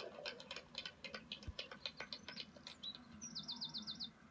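Faint, irregular high clicks, then a bird chirping: a few sliding high notes, and near the end a quick trill of about seven falling chirps.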